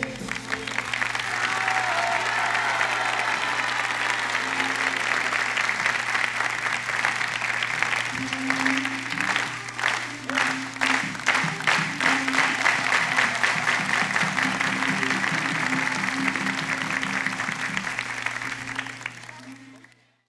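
Studio audience applauding and cheering at the end of a song, with a low steady hum underneath; the applause grows more clattering in the middle and fades out near the end.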